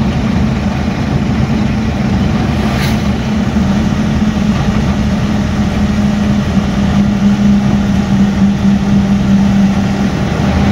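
Truck engine running steadily at cruising speed, heard from inside the cab, with a continuous low drone and road rumble.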